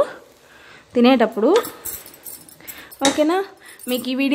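A woman's voice speaking two short phrases. In the gap between them a spatula scrapes faintly as it turns cooked rice in a pressure cooker.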